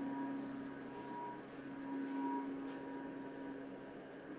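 Faint steady background hum with a few low held tones, heard through a video-call connection.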